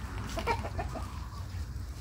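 A chicken clucking, a quick run of short clucks about half a second in, over a steady low rumble.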